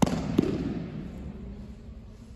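A judoka thrown with o-soto-gari landing on his back on tatami mats with a loud slap, followed by a second, shorter smack about half a second later. The hall's echo dies away over about a second.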